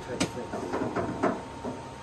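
A sharp click near the start and another about a second later as hands work at a boat's open water-tank hatch and its fittings, with faint mumbled speech between them.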